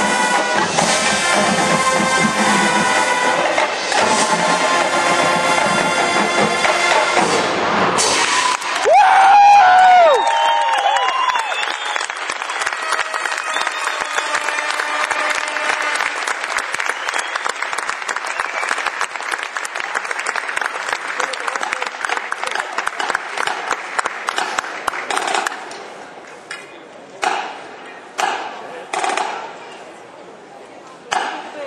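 Marching show band of brass and drums playing, ending on a loud final chord about nine seconds in. The band's sound gives way to audience applause and cheering, which fades out near the end with a few last shouts.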